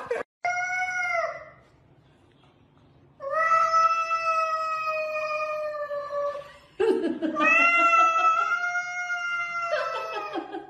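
A cat yowling (caterwauling) while squaring up to another cat: a short call, then two long drawn-out yowls of about three seconds each, each held at a steady pitch.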